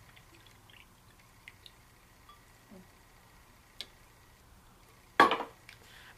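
A drinking cup being handled, with a few faint small clinks, then a single sharp knock a little after five seconds in.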